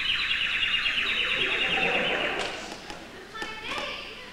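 A long, high, wavering vocal cry lasting about two and a half seconds that cuts off sharply, followed by a few spoken sounds near the end.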